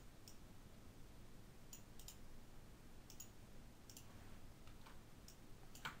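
Near silence with a handful of faint, scattered clicks from a computer mouse and keyboard.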